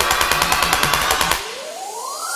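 An electronic build-up in the soundtrack: a rapid buzzing stutter of about fourteen pulses a second, then, about a second and a half in, a single tone rising steadily in pitch.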